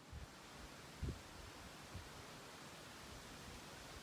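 Faint, steady background hiss with a single soft low thump about a second in.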